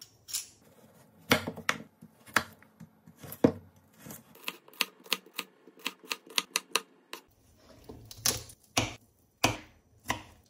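Kitchen knife chopping vegetables on a wooden cutting board: a string of sharp knocks. About halfway through comes a quicker, even run of lighter chops through celery, around four a second, with a few heavier chops after it.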